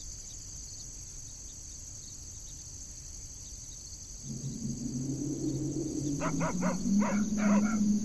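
Crickets chirping steadily in the night. About four seconds in, a louder, lower pitched sound swells in and breaks into a quick run of short pulses near the end.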